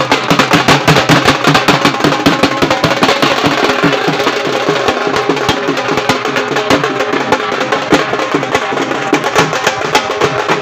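Music dominated by loud, fast drumming, a dense, steady run of drum strokes.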